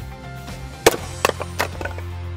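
A single sharp axe strike into wood a little under a second in, followed by a few lighter wooden knocks and clatters, over soft background music.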